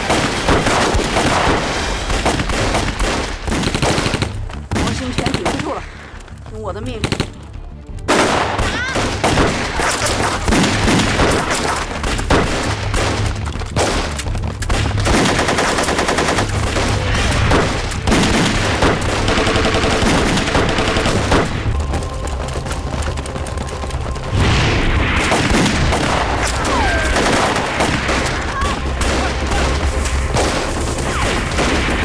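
Dense gunfire in rapid, nearly continuous bursts, with bullet impacts. The firing thins out briefly from about four to eight seconds in, then comes back.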